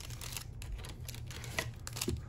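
Foil booster-pack wrappers crinkling and rustling as a handful of trading-card packs is handled, with a few light clicks.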